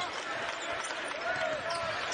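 Basketball being dribbled on a hardwood arena court, under a steady crowd murmur with faint voices.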